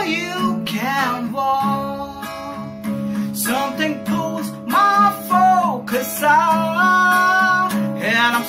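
A man singing with a strummed acoustic guitar fitted with a capo, moving through A minor chords and changing to F near the end, where he holds a long sung note.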